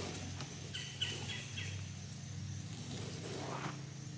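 Quiet woodland ambience: a bird gives four short, high chirps about a second in, over a faint steady low hum.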